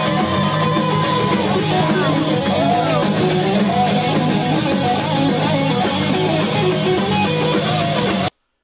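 Live rock band playing: electric guitar over drums, with a cymbal struck about four times a second.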